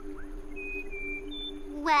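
Soft background music score with two sustained low notes held steadily and a few faint, short higher notes; a voice comes in near the end.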